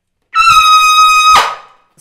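Trumpet playing a single loud high note, held steady for about a second and then stopped, leaving a short fading ring in the room.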